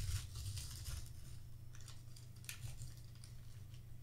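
Faint rustles and light clicks of a paper fast-food drink cup and its lid being handled, over a low steady hum.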